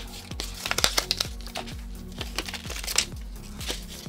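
Thin plastic packaging crinkling and crackling in short, irregular bursts as a sticky, stretchy rubber toy snake is pulled out of its packet, over steady background music.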